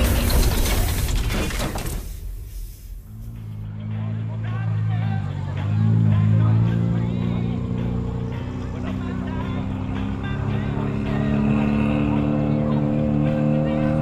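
A noisy whoosh from an intro sting fades out in the first two seconds, then hot rod race car engines run at low speed on a shale oval, a steady engine note whose pitch shifts briefly around the middle.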